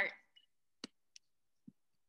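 A few faint, short clicks, spaced out, after a voice stops.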